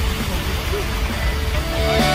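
Outdoor street noise, a low rumble with a hiss over it. Music with held notes comes in clearly near the end.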